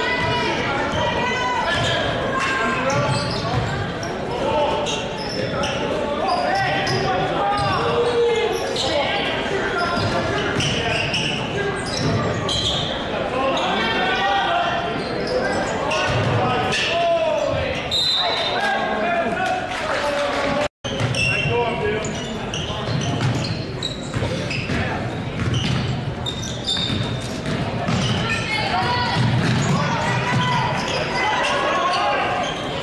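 Basketball game in a gym: the ball bouncing on the hardwood amid indistinct voices of players and spectators, echoing in the large hall. The sound cuts out for a split second about twenty seconds in.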